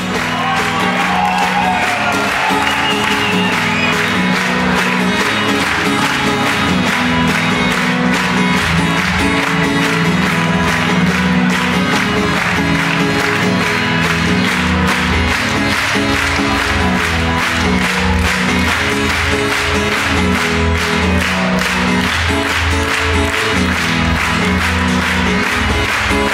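Live pop-rock band playing through a PA: electric guitar, keyboards and drums, with a crowd clapping and cheering. The low drum-and-bass beat gets heavier about halfway through.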